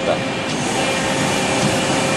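DMG Gildemeister Twin 65 twin-spindle CNC lathe running a threading cycle by rigid tapping. It makes a steady mechanical hum with a constant mid-pitched tone.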